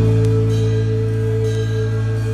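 Worship band music: a chord held steadily over a sustained low bass note, with no singing.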